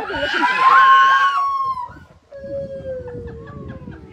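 Gibbon calling loudly: a shrill, screaming call held for about a second and a half with an upward lurch in pitch, then after a short break a long single hoot that slides slowly down in pitch.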